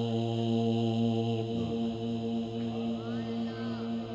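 A male qari's voice reciting the Quran in melodic tajweed style into a microphone: one long, steady held note, then ornamented melodic turns in the last second or two.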